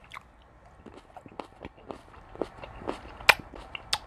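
A man chewing a mouthful of juicy tomato close to a clip-on microphone: irregular sharp mouth clicks and smacks, the loudest near the end.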